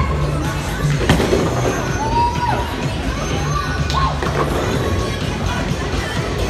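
Bowling alley din: background music with a steady bass beat under shouting voices and crowd noise. Two sharp knocks ring out, about a second in and again near four seconds.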